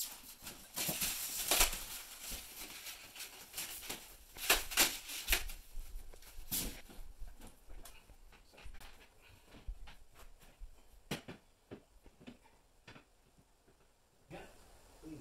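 Handling noise of a large flat-screen TV being taken out of its plastic wrapping and lifted onto a wall bracket. Rustling plastic in the first few seconds, then scattered light clicks and knocks as the TV is hung on the bracket.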